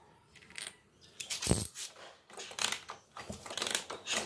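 Metal clinking and rattling of a spark plug socket and extension being handled and lifted off the spark plug: one loud clink about one and a half seconds in, then a quicker run of small clinks toward the end.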